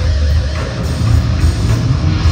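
Hard rock band playing loudly live, led by two electric guitars.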